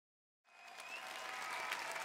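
Concert audience applauding, fading in from silence about half a second in and growing louder.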